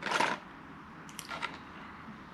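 Plastic lure packaging handled in the hands: a short crinkly rustle at the start, then a few faint crackles about a second later.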